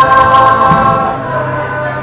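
A mixed vocal group of young male and female singers holding a sustained chord, which thins out and fades in the second half while a low note carries on underneath.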